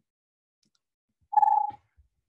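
A single short, steady, high tone lasting about half a second, a little past the middle, set in near silence.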